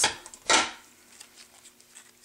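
Handling noise from a pair of scissors and a cut plastic soda-bottle bottom: one short rustle about half a second in, then a few faint light taps as the scissors are set down on a pressboard panel.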